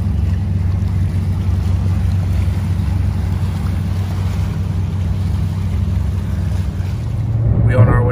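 A large passenger tour boat motoring past close by: a steady low engine drone over a hiss of water and wind. A man's voice starts right at the end.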